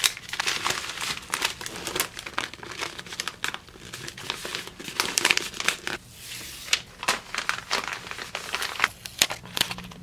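Paper packaging being handled: a card and sticker rustling as they go into a paper mailer, and a paper backing strip being peeled off, with many irregular sharp crinkles and crackles.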